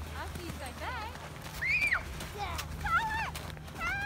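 Young children's high-pitched squeals and cries, about half a dozen short arching calls, the loudest about 1.7 s in.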